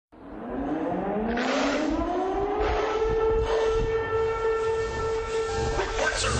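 A siren cuts in from silence, winding up in pitch over about two and a half seconds and then holding a steady wail, with a low rumble beneath.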